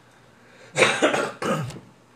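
A man coughing twice in quick succession, about a second in; the second cough is shorter.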